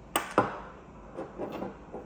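Two sharp knocks about a quarter second apart, then softer handling sounds, as the unscrewed parts of an induction lamp are handled and set on a table: the aluminium base holding the coupler rod and the glass bulb.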